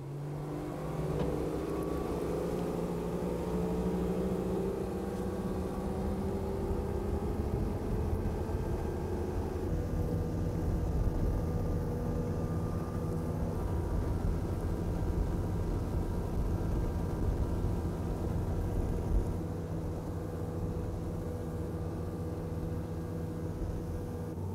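Twin outboard motors running a boat at speed: a steady engine drone over a low rumble, its pitch rising a little in the first few seconds as the boat speeds up.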